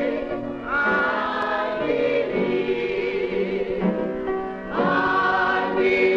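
A choir singing, holding long notes with vibrato and moving between them in phrases.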